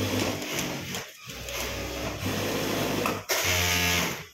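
Singer industrial single-needle lockstitch sewing machine stitching through layered fabric in short runs, with a brief pause about a second in and another just past three seconds, then a louder run near the end.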